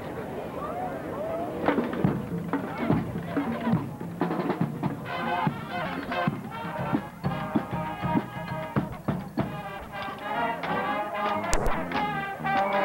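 Marching band playing: scattered drum strokes at first, then horns coming in about five seconds in, over crowd voices.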